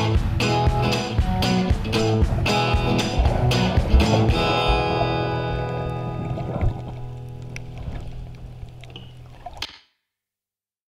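Background song with strummed guitar ending: even strums for the first few seconds, then a final chord rings out and fades away until the audio cuts off just before the end.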